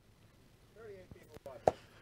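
Quiet studio room tone with a faint, distant voice about a second in, then a few sharp taps or clicks, the loudest just before the end.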